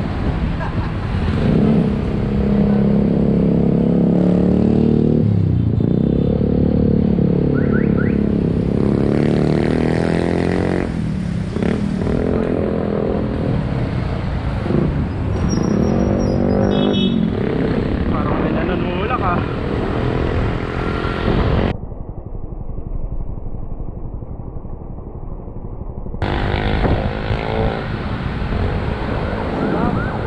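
Street traffic heard from a moving bicycle: motor vehicle and motorcycle engines passing, their pitch rising and falling. About three-quarters of the way through, the sound turns dull and muffled for about four seconds.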